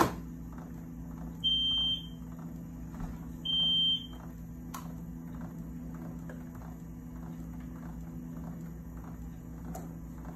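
Home hemodialysis machine sounding two steady electronic beeps, each about half a second long and two seconds apart, over a steady low hum. A sharp click comes right at the start, and fainter clicks follow later as tubing and fittings are handled at the machine.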